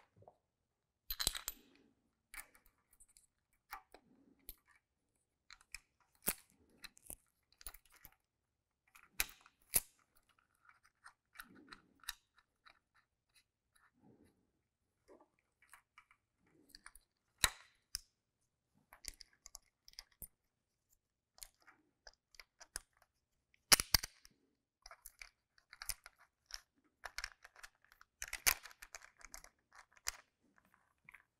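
Scattered clicks, clinks and knocks of metal timing-chain parts and hand tools being handled as the right-bank secondary chain and its guide are worked into place on a GM 3.6L V6. A few sharper knocks stand out: about a second in, around the middle, and twice near the end.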